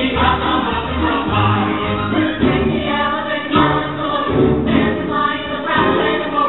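A stage-musical chorus sings a full ensemble number over backing music, with several voices together at a steady, loud level.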